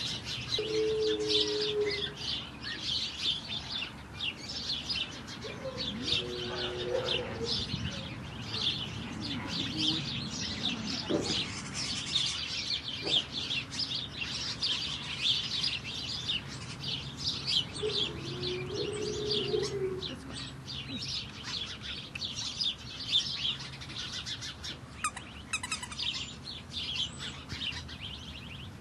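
Many small birds chirping continuously in a rapid, overlapping chatter.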